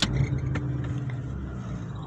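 Car engine idling with a steady low hum, heard from inside the cabin, with a sharp click right at the start.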